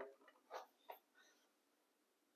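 Faint clicks and knocks of a plastic desk telephone being handled and tilted, two small clicks about half a second apart, otherwise near silence.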